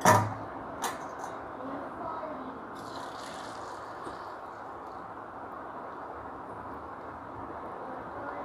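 A knock, then boiled vermicelli and its cooking water poured from a steel saucepan into a steel mesh strainer. The water splashes and drains through the mesh for about a second and a half, around the middle, over a steady low hiss.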